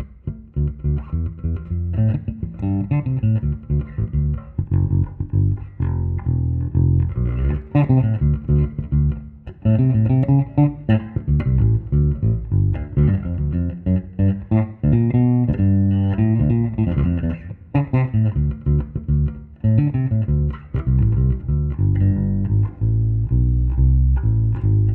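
Electric bass played solo, fingerstyle, on Leo Fender's homemade pickup-tester bass: a maple slab body with a Music Man neck, a Fender bridge and single-coil MFD pickups with large adjustable pole pieces. A continuous line of plucked notes, deep and strong in the low register, begins just after a brief near-silent moment at the start.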